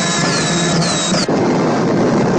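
Loud science-fiction film sound effects: a dense, noisy rush under a low hum, with repeated swooping electronic whistles that stop abruptly just after a second in, leaving the rush going.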